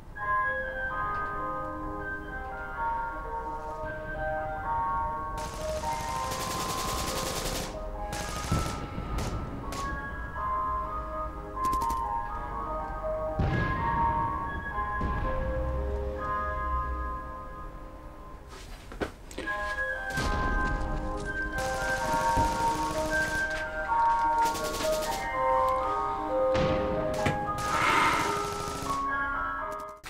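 Ice cream truck's chime tune playing a repeating melody of bell-like notes, broken now and then by short hissy bursts and thuds.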